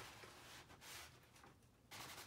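Faint swishing strokes of acrylic paint being worked onto a sheet of paper by hand, a few strokes in a row.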